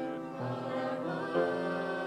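A small mixed group of men's and women's voices singing a hymn in harmony to upright piano accompaniment, with long held notes that change about every second.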